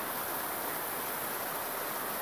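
Water spilling over a small stepped stone waterfall, splashing steadily.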